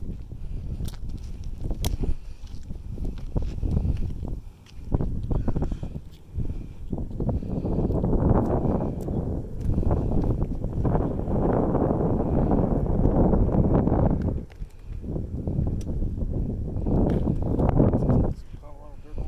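Wind buffeting the microphone in uneven gusts, swelling loudest in the middle stretch and dropping briefly twice, with a few sharp clicks in the first few seconds.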